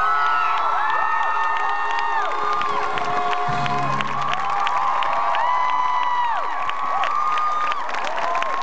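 A large crowd cheering, with many high screams and whoops over clapping.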